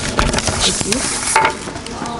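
Audience applause tailing off into scattered hand claps, thinning out after about a second and a half.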